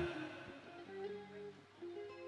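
A few faint single notes plucked on an electric guitar, one after another, each ringing briefly.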